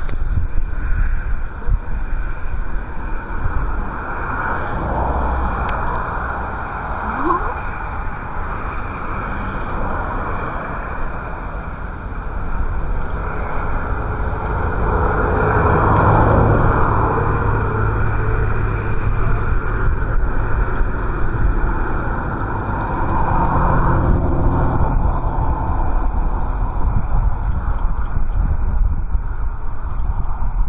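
Strong wind buffeting the camera microphone: a loud, gusting rumble that swells and eases over several seconds, with a faint hiss of wind and surf above it.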